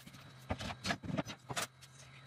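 Footsteps on the wooden floor of an enclosed tool trailer: about four knocking steps in quick succession, over a faint steady low hum.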